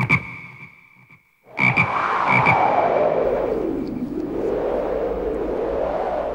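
Frog croaking sound effect opening a song track. A sharp hit and a thin held tone come first, then a rushing noise about a second and a half in that sweeps down in pitch and back up.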